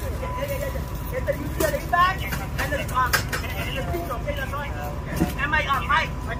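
Ambulance engine idling with a steady low rumble, with indistinct voices over it.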